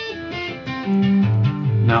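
Electric guitar playing a short run of single notes, sounded legato with left-hand hammer-ons and pull-offs, with each note held briefly before the next.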